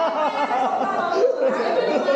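Several people talking over one another in casual conversation.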